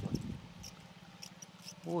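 A faint, steady low hum under an otherwise quiet outdoor background, with a few faint soft clicks; a short spoken exclamation comes near the end.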